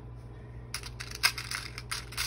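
Small metal and plastic jewelry charms clicking and rattling as fingers rummage through them in a plastic compartment organizer box. A quick run of light clicks starts a little under a second in.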